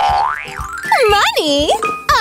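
Background music with a cartoon sound effect: a quick whistle-like glide that rises and then falls. It is followed by an excited voice whose pitch swoops down and up.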